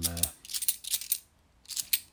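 Cupro-nickel 50p coins clinking against each other as they are pushed one by one off a stack held in the hand. A quick run of light metallic clicks fills the first second, then a pause and a short burst of clicks near the end.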